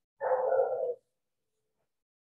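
A single short animal-like call, lasting just under a second, about a fifth of a second in.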